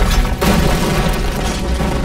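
A boom of flames bursting out, ending about half a second in and giving way to a low rumble of fire, over dramatic orchestral music.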